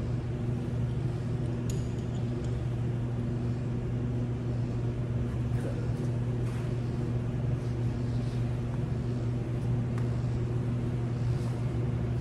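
Steady low droning hum of running machinery, unchanging in pitch, with a few faint clicks and rustles of gear being handled.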